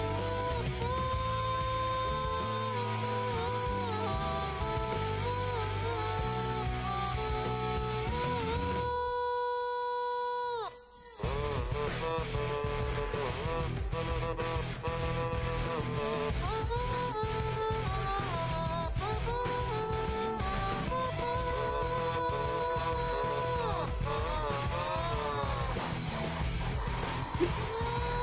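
An otamatone cover of a rock song playing, with a sliding otamatone lead melody over lower accompanying parts. About nine seconds in, everything but the lead drops out; the lead then slides down and cuts off, and the full arrangement comes back about two seconds later.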